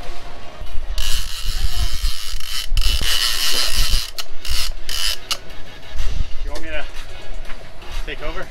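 Big-game fishing reel under load from a hooked sailfish: a loud buzzing rush of the drag and line from about a second in until past the fifth second, with the ratcheting of the reel mechanism and wind rumble on the microphone.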